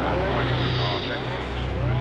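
Racing car engine running at a steady pitch, with crowd voices in the background.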